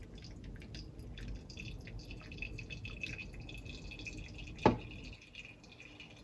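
Hot water poured from a gooseneck kettle onto a drip-bag coffee, trickling and dripping into a glass server. About four and a half seconds in comes a single sharp knock, the kettle set down on the marble counter, and the dripping goes on after it.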